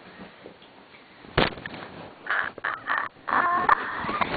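A person throwing themselves onto the floor: one heavy thud about a second and a half in. Loud, shrill, high-pitched voice sounds follow in short bursts.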